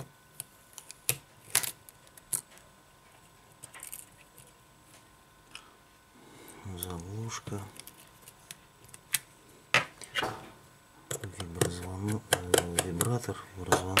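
Metal tweezers and small tools clicking and tapping against the opened iPhone 6's metal frame and internal parts: a scatter of sharp, small irregular clicks.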